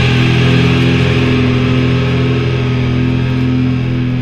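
Rock music: an electric guitar chord held and ringing out, slowly fading.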